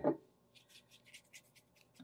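Faint, light strokes of a wet watercolor brush spreading clean water across a coated Ampersand Aquaboard panel, several soft brushing rubs a second.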